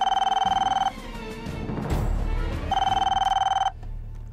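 Desk telephone ringing twice, each ring a trilling electronic tone about a second long, with a pause of nearly two seconds between them.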